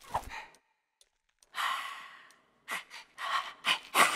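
Cartoon character's wordless vocal sounds: a short grunt at the start, a long breathy sigh, then several quick grunts near the end, each louder than the last.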